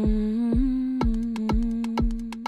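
Electronic dance music being composed live in Ableton: a steady four-on-the-floor kick drum at about two beats a second under one long held note, with quick hi-hat ticks joining about a second in.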